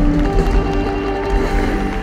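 Live rock band with electric guitars, bass and drums playing the closing bars of a fast shuffle. Near the end the drum hits stop and the final chord starts to ring out and fade.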